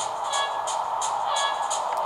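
Racing-game audio played through the Ekoore Ocean XL phablet's loudspeaker: background music with a steady ticking beat over car engines idling on the starting grid.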